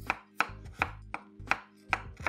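Chef's knife cutting the skin off a shriveled ginger root, striking a wooden cutting board about six times at an even pace, roughly every 0.4 seconds.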